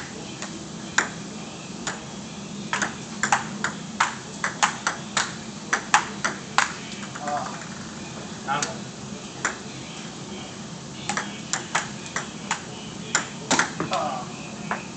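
Table tennis ball clicking back and forth between paddles and table in two quick rallies, one in the first half and another near the end, with a short lull between them.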